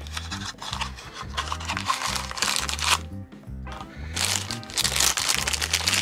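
Crinkling of a thin clear plastic bag and rustling of a small cardboard box as a toy car is slid out and handled, in two spells with a short pause between them, over background music.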